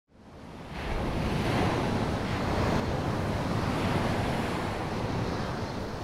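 Ocean surf: a steady wash of breaking waves that fades in over about the first second.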